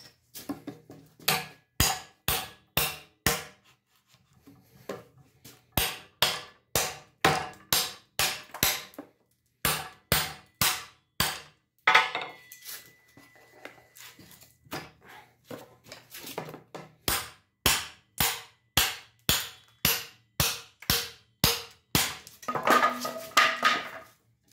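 Steel hammer striking the spine of a knife to drive its edge into a wooden board held in a vise, in runs of sharp blows about two or three a second with short pauses between. Midway one hit rings briefly, and near the end there is a longer ringing clatter.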